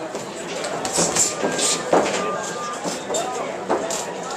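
Spectators chattering and calling out in a large hall, with several sharp thumps between about one and two seconds in and another near the end.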